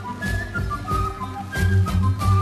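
Baroque music played on Andean instruments: a quena carries a melody of short notes over plucked guitars and a low bass line.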